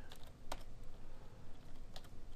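Computer keyboard being typed: a few separate keystrokes, the clearest about half a second in.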